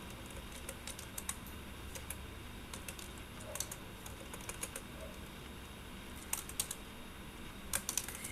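Typing on a computer keyboard: faint, scattered key clicks that come more thickly in the last couple of seconds.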